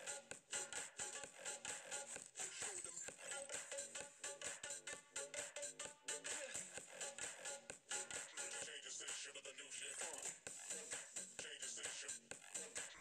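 Quiet background electronic music with a steady beat.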